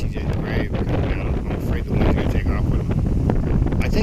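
Strong, gusty wind buffeting the microphone with a heavy, continuous rumble.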